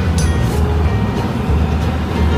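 Background music with a bass line, heard over the low rumble of a car driving, as heard from inside the car's cabin.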